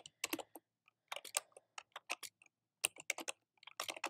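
Typing on a computer keyboard: quick runs of key clicks in short bursts separated by brief pauses.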